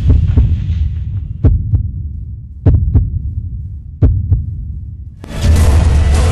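Heartbeat sound effect in an intro soundtrack: three double thumps about 1.3 s apart over a low drone. The music fades away in the first second and comes back loud about five seconds in.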